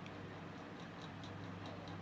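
Quiet room tone in a pause between speech: a steady low electrical hum with faint light ticks repeating a few times a second.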